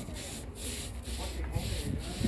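A stiff plastic broom scrubbing a wet concrete tomb slab in rhythmic back-and-forth strokes, about two a second.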